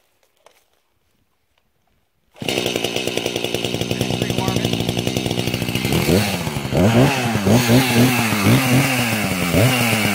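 Echo CS-590 Timberwolf two-stroke chainsaw, muffler-modded with the baffle removed, starting up about two and a half seconds in and running steadily. From about six seconds in it is revved up and down several times on the throttle.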